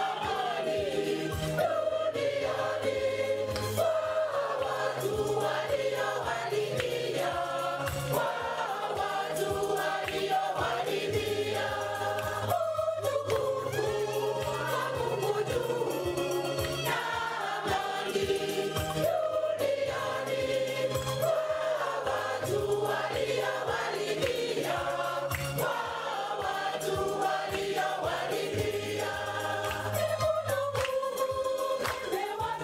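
A choir singing a Mass hymn, with held bass notes underneath and a steady beat.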